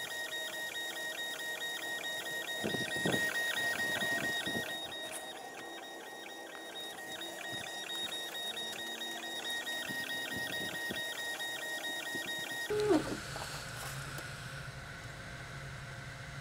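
Longer Ray5 10 W diode laser engraver running a slow, high-power raster engrave on a stainless steel card: a steady high whine from its stepper motors, with fast, even ticking as the head sweeps back and forth several times a second. About 13 seconds in it stops, and a low steady hum with one brief knock follows.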